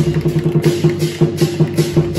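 Dragon dance percussion: fast, even drum strokes with clashing cymbals and gongs.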